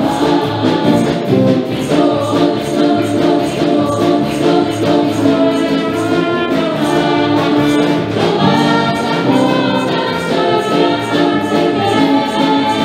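Live worship music: a group of women singing a Spanish-language praise song together over a band with a steady beat.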